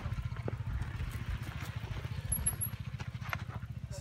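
Low, rapidly fluttering rumble of wind buffeting the microphone during a bicycle ride on a dirt track, with a few faint clicks.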